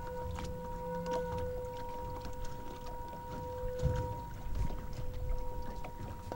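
A steady held tone with an overtone an octave above, the lower tone fading about four seconds in, over low bumps and thumps.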